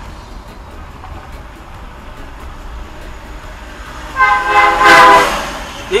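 Steady road and engine noise of a car on the move, then a vehicle horn sounds once for about a second near the end, loud and held on a steady pitch.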